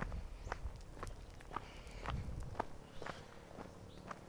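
Footsteps of a person walking, about two steps a second at an even pace.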